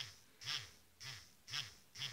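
Small electric motor of a cheap battery-powered nail drill buzzing faintly in short pulses, about two a second, as its bit is held against satin fabric. The pulsing comes from heavy vibration and side-to-side wobble of the bit, a sign of the poorly made device.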